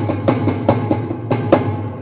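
Electronic drum sounds from an Alesis drum module, triggered by fingertip taps on piezo-fitted wooden soda-crate drums: a quick run of hits, about five a second, over a sustained low tone. It starts and cuts off abruptly.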